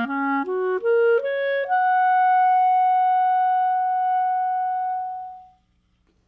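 Solo clarinet playing a rising line of short notes, then one high note held for about four seconds that fades out.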